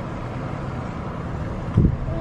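Steady low rumble and road noise of a car driving slowly, heard from inside the cabin, with a brief low bump near the end.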